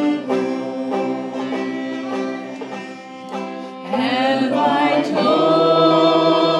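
Country-style music: plucked string instruments play an instrumental passage, and about four seconds in a voice starts singing over them.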